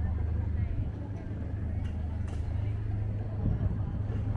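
Outdoor street ambience: a steady low rumble, likely traffic, with passers-by talking indistinctly and a few light clicks.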